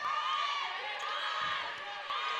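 Live basketball court sound: a ball being dribbled on a hardwood floor under a mix of crowd and player voices.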